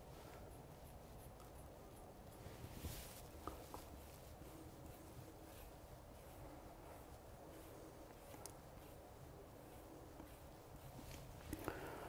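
Faint scratching of a comb drawn through pomade-dressed hair, a few soft strokes over quiet room tone.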